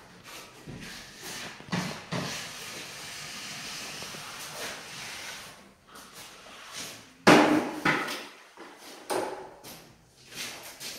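A drywall finishing tool on an extension handle scraping steadily along a joint for a few seconds. About seven seconds in comes a sharp loud knock, then a few smaller clatters as the tool and handle are handled.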